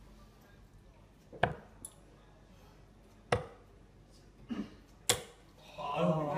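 Three darts striking a Winmau Blade 4 bristle dartboard, one sharp thud a little under two seconds apart.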